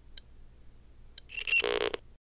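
Production-company audio logo sting: a faint low hum with a few sharp clicks, then a bright electronic tone that swells up over the last half second and cuts off abruptly.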